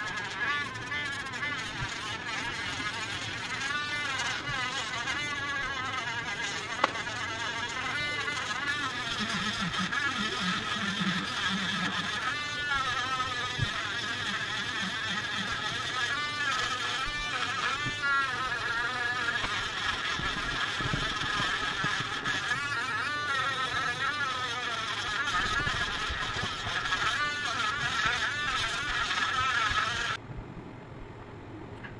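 Culiau Customizer cordless engraving pen running in a high buzzing whine, its pitch wavering as the bit cuts small window openings through clay. It stops at the very end.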